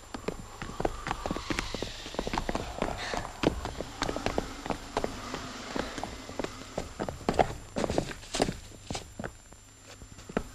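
Footsteps of several people on hard ground, a quick, irregular run of sharp steps and knocks, over a steady low hum.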